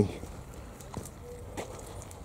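Footsteps on a paved path: a few soft steps, each a short click.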